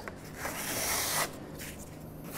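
A wide steel knife scraping across a table top as it spreads wet, thickening concrete overlay, in one scraping stroke lasting about a second.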